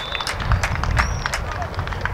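Open-air football pitch ambience: distant players' voices, a scatter of short sharp clicks and knocks, and a low fluctuating rumble throughout.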